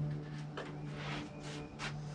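Two short scraping strokes, about half a second in and near the end, as the mower's dipstick is worked in its tube, over a steady low hum.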